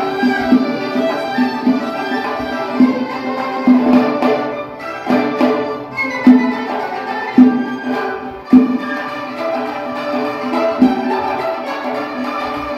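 Live Uyghur folk ensemble playing: bowed spike fiddles (ghijak) carry the melody over a hammered dulcimer, with a frame drum (dap) striking sharp accents about once a second through the middle.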